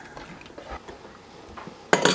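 Hot squash blanching water being ladled through a metal canning funnel into glass jars of cubed squash, with a few faint knocks and one sharp clink of the ladle against the funnel or jar near the end.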